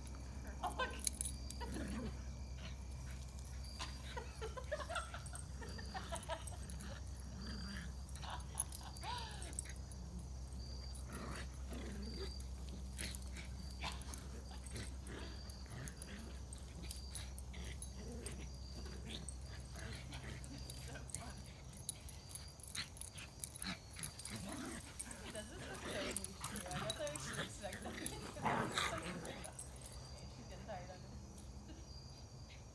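Two dogs, a Brussels Griffon and a German Shepherd, playing tug over a leash, with scattered short yips and whimpers and occasional light clicks.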